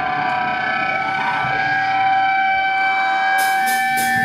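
Amplified electric guitars sustaining a steady drone of several held, ringing tones: amp feedback at loud stage volume. Cymbal hits come in near the end.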